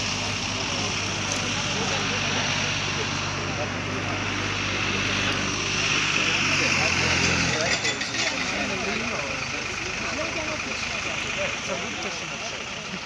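Tractor engine running with a steady low drone that stops about seven seconds in, under the voices of a group talking.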